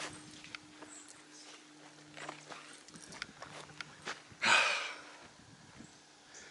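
Light, scattered clicks and crackles of movement over dry leaves and undergrowth, with one brief, loud rush of rustling noise about four and a half seconds in.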